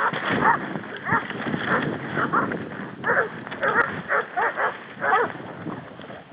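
Hunting dogs barking, a run of short repeated barks that come thickest in the second half and fade away near the end.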